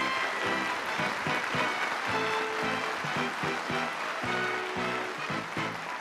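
Live band playing the instrumental introduction of a Korean pop song: short, separated notes in a steady rhythm over an even wash of crowd noise.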